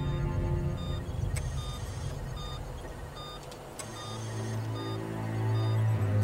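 Background drama music with short, regular electronic beeps of a hospital patient monitor; low sustained notes swell in about four seconds in.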